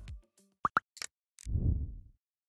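Electronic logo sound effect: two short rising blips and a few light clicks, then a deep low swell about a second and a half in.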